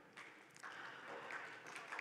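Faint audience applause in a conference room, starting about half a second in.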